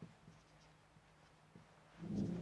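Faint strokes of a marker pen on a whiteboard: a few soft, scattered ticks against near silence.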